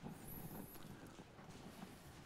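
Almost silent room tone with faint rustles and a few light taps.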